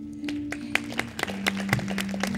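Electric guitar holding a few low notes while scattered hand clapping starts about a quarter second in.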